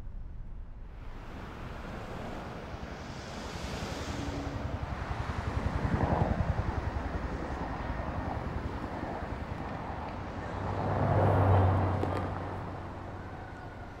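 City street traffic: cars passing by over a steady background rush. One swells past about six seconds in, and another, with a low engine hum, passes near the end.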